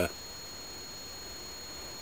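Steady faint hiss with a thin, high, unchanging whine, the recording device's own background noise, with no other event.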